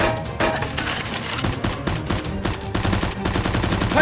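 Rapid automatic-gunfire sound effects, firing continuously over background music.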